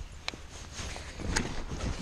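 Boots scuffing and sliding on slippery, mud-covered rocks as the wader slips and nearly falls, with fabric rustling and two sharp knocks. The scuffing grows louder and busier near the end as the slip happens.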